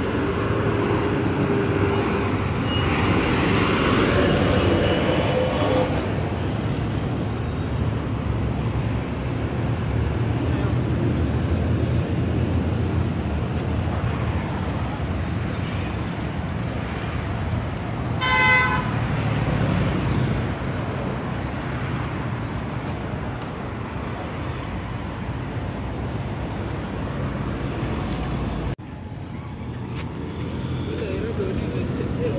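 Busy city road traffic, motorcycles and cars running past with a steady rumble, and a short horn toot about two-thirds of the way through. The noise drops off suddenly near the end.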